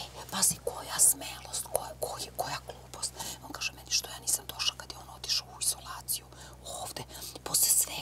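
Two women whispering to each other in hushed, unvoiced speech, full of short hissing s-sounds.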